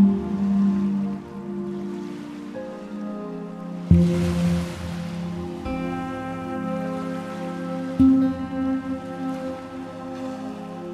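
Soft, slow new-age chillout music of sustained chords, with a new low chord struck about every four seconds, near the start, about four seconds in and about eight seconds in. A brief hissing swell rises with the second chord.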